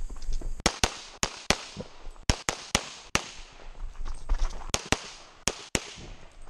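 Springfield Armory XDm 5.25 pistol firing .40 S&W major-power loads rapidly, about a dozen shots, mostly in quick pairs, with a pause of about a second and a half between the first eight and the last four.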